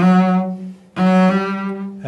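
Cello bowed in two sustained notes of about a second each, played with vibrato as the left hand moves from one finger to the next.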